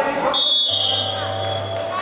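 Signal tones stopping a wrestling bout: a steady high whistle-like tone about a third of a second in, joined a moment later by a low electronic buzz that holds to the end, typical of the mat's timer buzzer and the referee's whistle halting the action.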